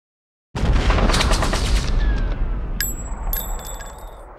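Intro sound effect: a burst of rapid automatic gunfire starts about half a second in, lasts just over a second and fades out, followed by a few bright, ringing metallic pings.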